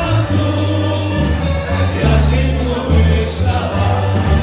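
Dance band playing an upbeat dance tune with sung vocals over a bouncing bass line.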